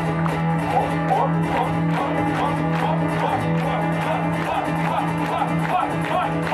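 Live band music: strummed guitars over a drum kit with a steady beat.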